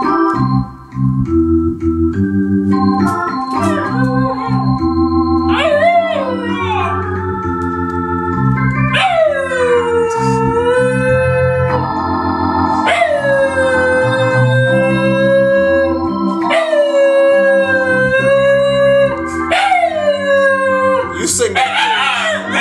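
Shiba Inu howling along to electronic keyboard chords: from about six seconds in, a series of long howls, each starting high and sliding down to a held note, over steady organ-like chords.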